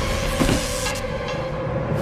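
Sci-fi cartoon sound effects: an electric discharge crackling that dies away about a second in, with a single thud about half a second in as a body hits the floor, over a steady hum.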